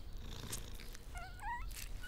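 A newborn animal's thin, wavering squeak, about half a second long, a little past the middle, over a faint low background.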